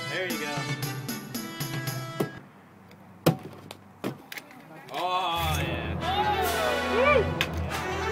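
Background music with a singing voice that drops out for about three seconds. In the gap there is one sharp crack, then a second, softer knock, before the music returns with a heavier bass.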